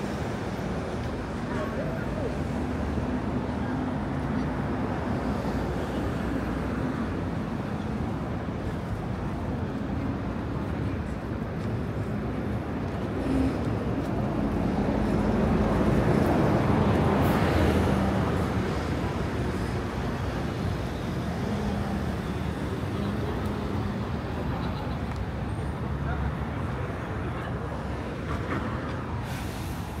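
City street traffic: a steady wash of vehicles with a low engine hum, and one vehicle passing close about halfway through, growing louder and then fading. Passers-by talking can be heard under it.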